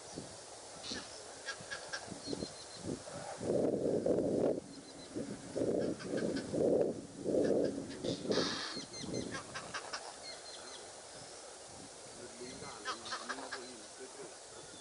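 Birds calling: a run of five or six loud, hoarse honks in the middle, with short, high twittering chirps before and after.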